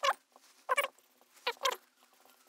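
Marker pen squeaking on a whiteboard as words are written: four short squeaks, the last two close together.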